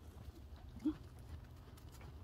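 Faint sounds of a horse moving on arena sand under a rider, mostly quiet, with one short low sound just under a second in.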